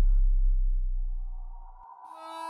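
The tail of a production-logo sound effect: a deep bass rumble fading away, with a faint ringing tone over it, cutting off just before the end.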